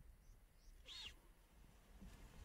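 A single brief high-pitched animal call about a second in, over a faint low rumble.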